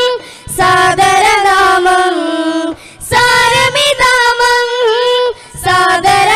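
A group of voices singing a Malayalam Islamic devotional song in unison, in long ornamented phrases with short breaks for breath between them.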